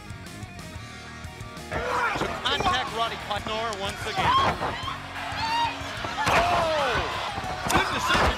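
Quiet ring-entrance music, then, about two seconds in, the wrestling broadcast's own sound: announcers commentating over the arena crowd, with a few sharp thuds of bodies landing on the ring mat.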